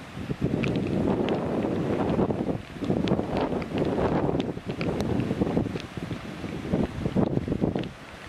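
Wind buffeting the microphone in irregular gusts, a rough low rumble that rises and falls with short lulls.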